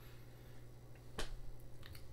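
Faint room tone with a steady low hum, and one short sharp click about a second in, followed by a couple of fainter ticks.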